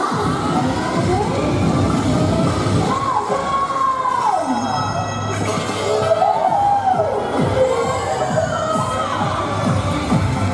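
Upbeat show music with a steady beat playing over loudspeakers, with a crowd cheering and children shouting.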